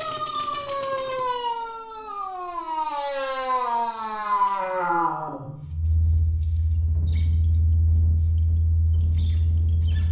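Contemporary ensemble music with live electronics: one pitched tone slides slowly downward for about five seconds, then gives way to a steady low drone. Scattered light clicks and taps sound over the drone.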